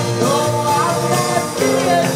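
Live band music with several voices singing together over a steady bass line, recorded loud from within the audience.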